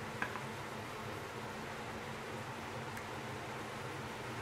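Steady low hum and hiss of kitchen background noise, with a faint click just after the start as a spoon touches a dish while puree is served.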